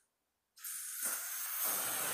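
SVR Sun Secure SPF 50+ sunscreen mist sprayed onto the face: a steady hiss that starts about half a second in and keeps going.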